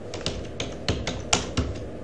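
Computer keyboard keys being typed: a quick run of separate keystrokes spelling out a short word.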